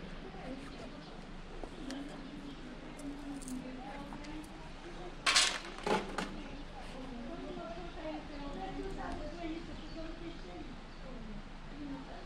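Indistinct voices of people talking, too faint to make out words, with a sudden loud short noise about five seconds in and a smaller one just after.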